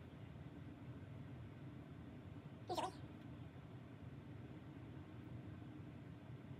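A single brief pitched cry, about three seconds in, over quiet room tone with a low steady hum.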